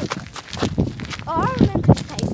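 Indistinct voices over footsteps and the rustle and knocks of a phone swinging against jeans as someone walks.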